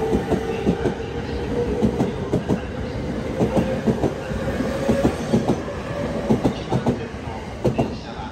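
JR East E231-500 series commuter train pulling out and speeding up. Its electric traction motors whine, slowly rising in pitch, over a rapid clatter of wheels on the rails. The whine fades about five seconds in as the last cars pass, and the clatter runs on to the end.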